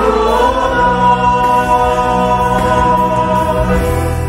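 A small mixed choir singing a hymn with accordion accompaniment, holding one long chord that breaks off near the end, leaving the accordion's steady low notes.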